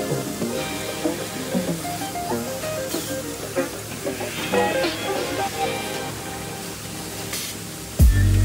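Background music: an instrumental track with a changing melody, growing a little quieter toward the end.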